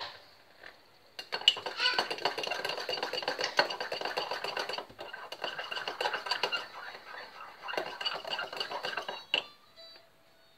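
A spoon scraping and knocking against a metal cooking pot: a dense run of rapid scrapes with a ringing metallic tone, starting about a second in and stopping near the end.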